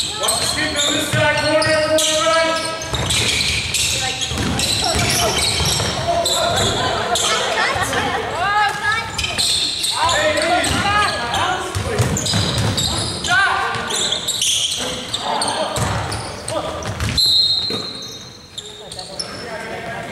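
Basketball game sounds in a large echoing gym: indistinct players' voices calling out over the ball bouncing on the hardwood court. A short whistle blast comes near the end, consistent with a referee stopping play for a foul before free throws.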